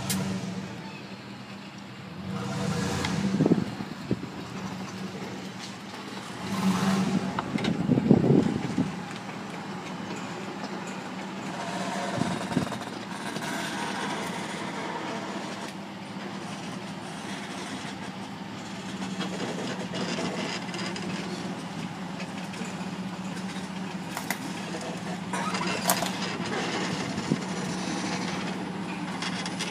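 Tractor mowing tall grass, its engine a steady drone throughout. Two gusts of wind on the microphone in the first nine seconds.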